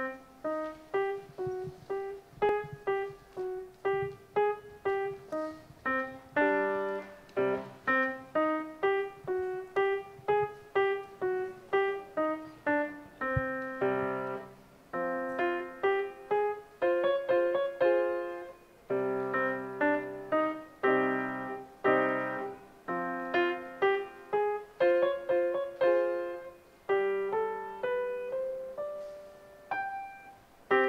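Grand piano played solo: a melody of separate notes at an even pace, each note struck and fading, with lower bass notes joining in now and then.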